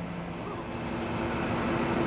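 Mobile crane's engine and hydraulics running steadily while it lifts a bundle of steel rebar. The steady hum steps up in pitch about half a second in and grows gradually louder.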